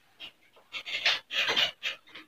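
A whiteboard eraser wiping writing off a whiteboard in several quick rubbing strokes, the loudest in the second half.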